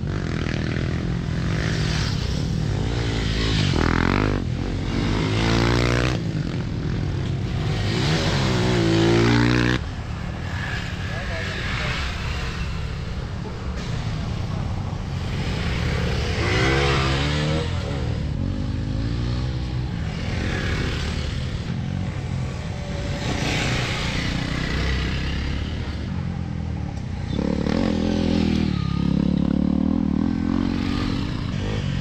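Several off-road motorcycles riding past on a dirt trail, their engines revving up and down as each one goes by. The loudest pass is about nine seconds in, with more around the middle and near the end.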